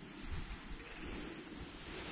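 Faint wind on the microphone outdoors: a steady hiss with irregular low buffeting.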